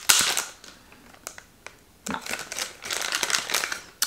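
Crinkling and rustling of a foil blind-bag wrapper being opened by hand, in two bursts with a couple of light clicks between them.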